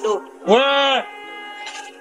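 A person's drawn-out shout, about half a second long, rising then falling in pitch, over steady background music.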